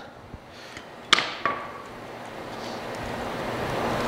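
Burger press being worked while pressing sausage patties by hand: a couple of faint clicks, then one sharp clack about a second in, followed by quiet handling noise.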